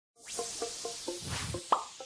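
Logo intro sting: a run of short plucked notes, about four a second, over a swelling hiss-like whoosh, with a quick rising blip near the end.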